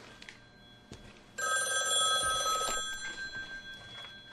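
Landline desk telephone's bell ringing once for just over a second, about a second and a half in, then dying away. A couple of faint knocks come before it.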